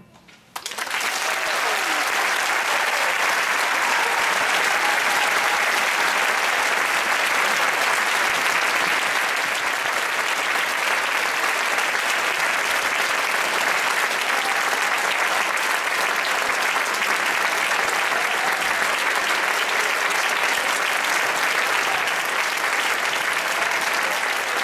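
Audience applauding. The clapping starts abruptly about half a second in, right after the band's final note dies away, and then stays steady.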